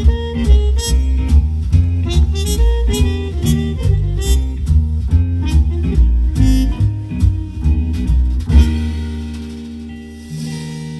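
Playback of a song recorded on a Yamaha Tyros 5 arranger keyboard, heard through its speakers: drums, bass and chords in a steady beat. About eight and a half seconds in it ends on a held final chord that dies away.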